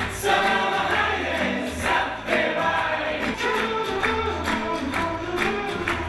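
Actors singing a song together on stage over instrumental accompaniment.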